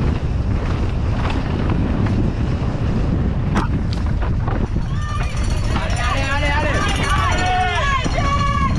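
Wind rushing over a chest-mounted camera's microphone and mountain-bike tyres rattling over rocky dirt on a fast descent, with a couple of sharp knocks in the middle. From about five seconds in, trackside spectators shout and cheer, several voices at once.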